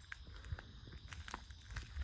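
A few soft, irregular footsteps over a quiet background.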